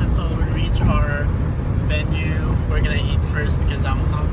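Steady low road and engine rumble heard inside a moving car's cabin, with a man's voice talking over it.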